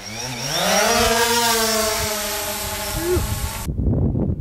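DJI Phantom quadcopter's propellers spinning up to a rising buzzing whine as it takes off, then holding a steady pitch. The sound cuts off suddenly near the end.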